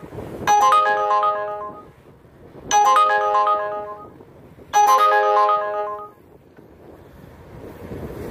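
A phone ringtone: a short chiming melody of several quick notes, played three times about two seconds apart, each dying away; it stops after the third.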